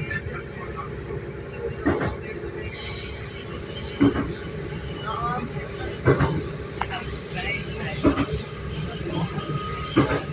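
Train carriage running, heard from inside: a steady rumble with the wheels knocking over rail joints about every two seconds. A high-pitched wheel squeal joins about three seconds in as the train takes a curve.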